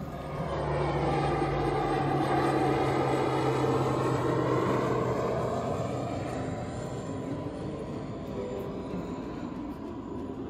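Low-flying fixed-wing airplane passing overhead: its engine noise swells within the first second, is loudest a few seconds in, then slowly fades away, with its tone sliding as it passes.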